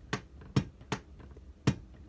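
Sharp plastic-and-metal clacks of a 1/24-scale diecast stock car being pressed down by hand, four of them at uneven intervals. The body rattles loose on the chassis, as if it is not screwed in all the way.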